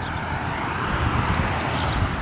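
A passing car's tyre and road noise, a rushing hiss that swells through the middle and eases off, over the low rumble of wind on the microphone.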